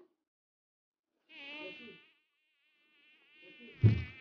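A flying insect buzzing, its pitch wavering slightly. It starts a little over a second in and carries on. A single knock comes near the end.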